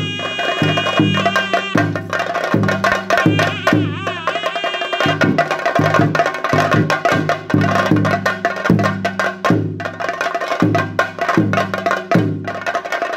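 Theyyam percussion ensemble: chenda drums beating a steady deep rhythm, about one stroke every two-thirds of a second, under dense rapid clattering strokes, with a high wavering melody line over it in the first half.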